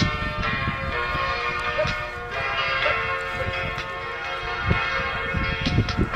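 Layered, sustained bell-like ringing tones, with a few fresh strikes, over a gusty low rumble of wind on the microphone.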